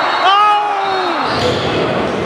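A long held vocal note that slides up at its start and drops off just past a second in. It gives way to the noise of a basketball game in a gym, with the ball bouncing.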